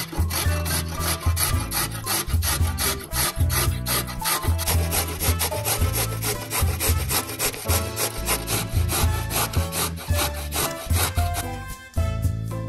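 A large carrot grated on the coarse side of a stainless-steel box grater: quick, even rasping strokes, about four a second.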